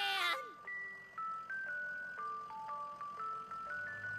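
An ice cream truck jingle: a simple tune played one clear note at a time, stepping up and down. In the first half second a voice trails off, falling in pitch.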